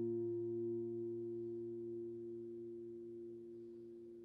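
An electric guitar chord on a Comins GCS-1ES semi-hollow guitar left ringing out, its sustain fading slowly and steadily.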